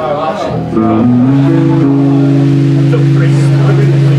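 Amplified electric guitar: a note slides up about a second in and is then held, ringing steadily.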